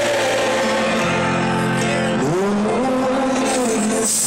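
Live rock band music heard from within a festival crowd: a sustained low chord that shifts about a second in, under a wordless sung line that swoops up into held notes about two seconds in.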